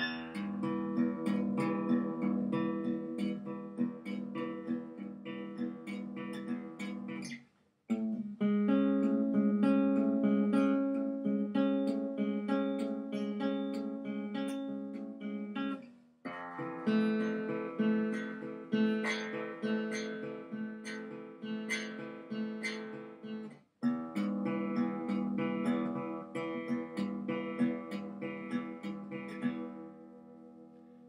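Newly restrung acoustic guitar being played in four phrases of plucked notes and chords, with brief breaks about 8, 16 and 24 seconds in.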